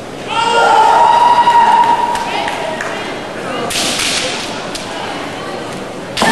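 A kendo fighter's kiai: one long, high shout held for about a second and a half. Later come sharp clacks of bamboo shinai, the loudest a short crack about four seconds in.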